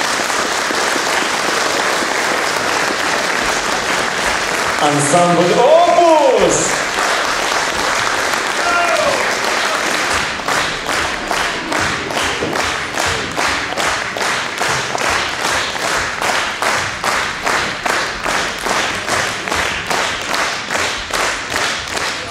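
Audience applauding after a piece. A brief arching cry rises over the applause about five seconds in, and about ten seconds in the clapping turns into steady rhythmic clapping in unison, about two to three claps a second.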